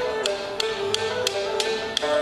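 Nanyin chamber music at a brisk tempo: a bowed two-string fiddle and vertical flute carry a sustained melody over plucked pipa and lute, with sharp regular clicks about three times a second.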